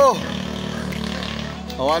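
Background music with steady held tones, under shouting at the start and again near the end.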